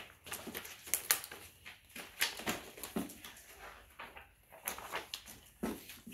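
A stack of large printed heat-transfer sheets being leafed through by hand, rustling and crinkling in irregular bursts.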